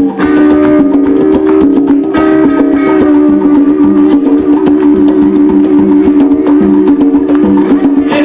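Live tropical dance band playing, with an electric guitar taking the lead over steady percussion and held notes.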